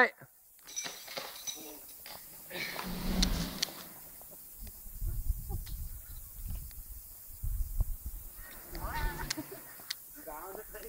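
A man yelling from high up on a giant rope swing as he swings out and back, with gusts of wind rumbling on the microphone in the middle stretch and a louder yell near the end.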